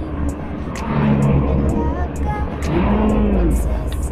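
Steady low rumble of a car heard from inside the cabin. Over it a man, chewing a mouthful of steamed bun, twice gives a short closed-mouth "mmm", the second one rising and falling in pitch.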